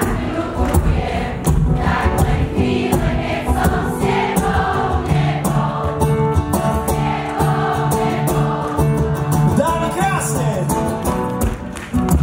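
A concert audience singing along together in chorus, with the live band playing under them.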